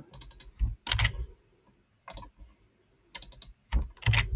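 Computer keyboard keystrokes in a few short, scattered clusters with quiet gaps between them.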